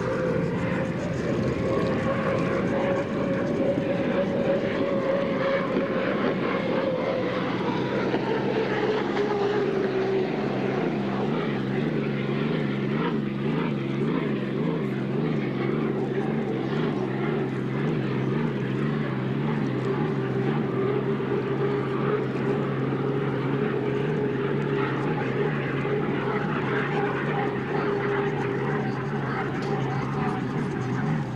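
Unlimited hydroplane racing at speed: a steady engine drone, with a higher tone that rises and then falls away over the first ten seconds as the boat passes.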